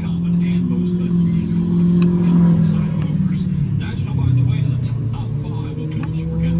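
RV onboard generator running with a steady low hum whose pitch dips briefly about four seconds in. A couple of faint clicks come from the monitor-panel buttons being pressed.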